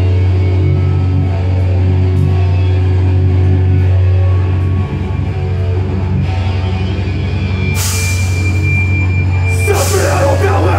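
Heavy metal band playing live with no vocals: distorted guitars and bass hold a loud, low, sustained note over drums, with cymbal crashes about eight seconds in and again near the end.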